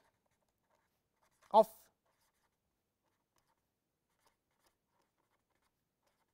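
Very faint scratching of a felt-tip marker writing on paper, around one short spoken word; otherwise near silence.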